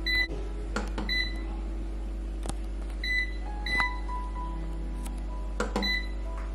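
Control dial of a Xiaomi Mi Smart Air Fryer being turned and pressed: five short, high electronic beeps, irregularly spaced, with a few sharp clicks from the knob, over soft background music.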